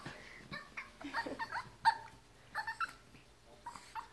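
Small Chihuahua-pug mix dog making a series of short, quiet, high-pitched whines, the sound of a dog excitedly greeting its owner.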